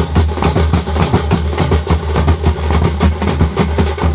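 Thappu frame drums beaten by a drum troupe in a fast, dense rhythm, many strokes a second over a steady low rumble.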